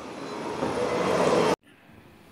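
Background machine noise, a broad rushing sound that grows steadily louder, then cuts off suddenly about one and a half seconds in, leaving faint room tone.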